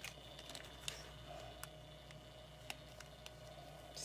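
Quiet room tone with a low steady hum and a few faint, scattered clicks and taps, about five in all, the sharpest near the end.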